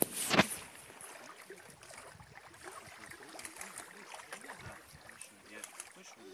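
Small waves lapping against a rocky lake shore with light outdoor noise, opened by a sharp knock just after the start.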